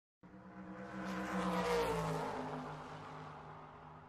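End-screen sound effect: a droning pitched tone with a rushing whoosh over it, swelling to its loudest just under two seconds in and then fading away.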